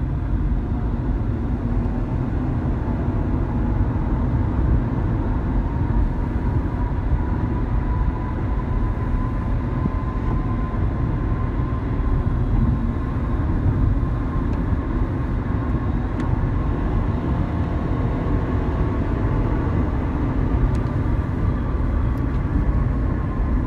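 A 2012 Nissan Sentra 2.0 heard from inside the cabin as it accelerates from about 40 to 65 mph: steady road and engine rumble, with a faint whine that rises slowly in pitch.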